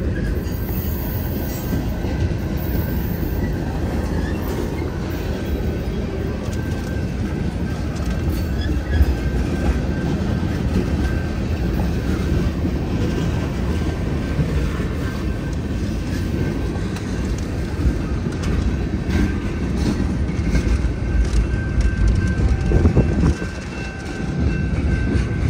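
Freight train cars (covered hoppers and tank cars) rolling past at trackside: steady wheel and rail rumble with scattered clicks, and a thin, steady, high-pitched wheel squeal over it.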